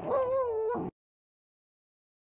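A small dog giving one drawn-out, high, slightly wavering whine, cut off abruptly about a second in.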